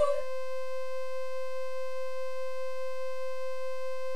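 A single synthesized note held at one pitch, rich in overtones, closing the song; its slight wavering dies out just after the start, leaving a dead-steady tone.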